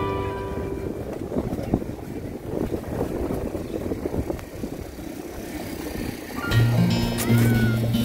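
Background music fades out within the first second, leaving outdoor ambient noise with an irregular low rumble. About six and a half seconds in, the music comes back with loud, sustained bass notes.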